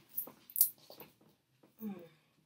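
Cards being gathered up by hand: a few soft scrapes and light taps of card stock, one crisper snap about half a second in, and a brief short vocal sound near the end.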